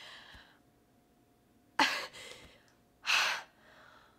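A woman's tearful breathing: a sudden sharp breath about two seconds in, then a louder, short breathy sigh about a second later.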